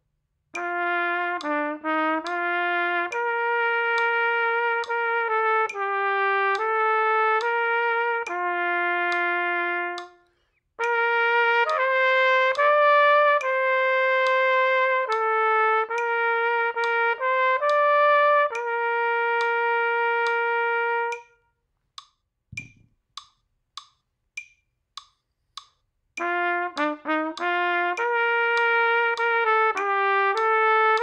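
Trumpet playing a moderato method-book exercise in 3/4 time over a metronome clicking at about 100 beats a minute. The tune climbs to a high concert D (written E on trumpet). It comes as two phrases, then a pause of a few seconds where only the clicks and one low thump are heard, then the tune starts again.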